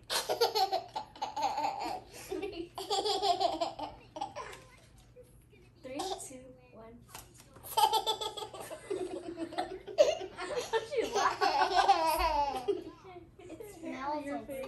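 Young children laughing and giggling in several bursts, with a longer run of laughter in the second half.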